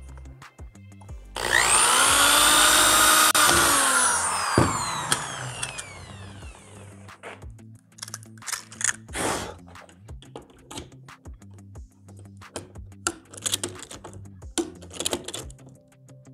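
Corded electric drill spinning up and boring a rivet hole through the aluminium hinge and door frame for about two seconds, then whining down in pitch after the trigger is let go. Short clicks and knocks of hand tools being handled follow.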